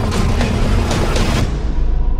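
Action-trailer score: a heavy low rumble with a quick run of about five sharp hits in the first second and a half, after which the high end fades away.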